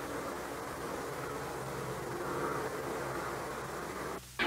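Steady hiss with a low hum underneath and no distinct sounds: the background noise of an old 16mm film soundtrack.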